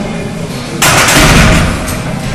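A heavy barbell loaded with iron plates (405 lb) set down into the bench-press rack: a sudden loud metallic crash about a second in, ringing on for most of a second.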